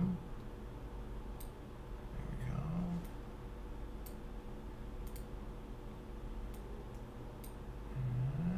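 Scattered computer mouse clicks, about seven in all, over a steady low electrical hum, with a short low murmur from a man's voice a little over two seconds in.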